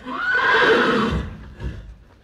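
A horse whinnies once, loudly, in a call of about a second, followed by a couple of low thuds.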